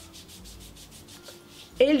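A hand rubbing sunscreen lotion into the skin of a forearm: a soft, quick, repeated swishing of palm on skin as the white spray is worked in.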